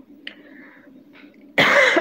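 A woman coughs hard once about one and a half seconds in, after a quiet pause; the cough comes from an issue in her throat.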